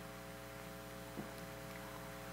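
Faint, steady electrical mains hum, several even tones held at once, with a small soft tick about a second in.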